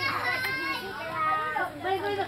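Children's high-pitched voices calling out and chattering over each other, with adults talking.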